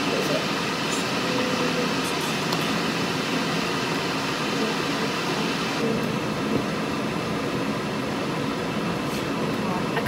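Kettle heating water for coffee: a steady rushing, rumbling noise as it works towards the boil.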